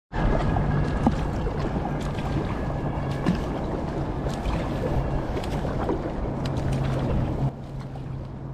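Inflatable kayak being paddled on open water: steady splashing and lapping of water around the hull, with scattered small clicks and a low steady hum underneath, the sound dropping in level shortly before the end.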